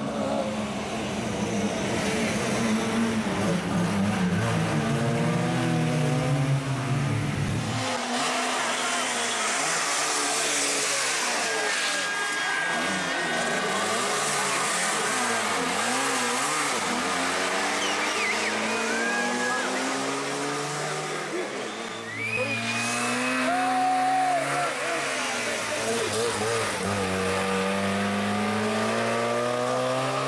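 Trabant P60 rally car's two-stroke twin-cylinder engine revving hard, its pitch climbing and dropping again and again through gear changes as the car drives past on a special stage, in several passes cut one after another.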